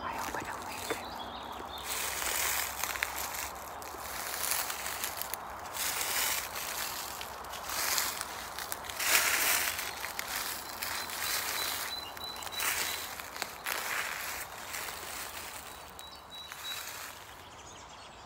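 Footsteps rustling and crunching through grass and dry leaves in irregular surges, as someone creeps up close. A faint thin bird note sounds twice in the second half.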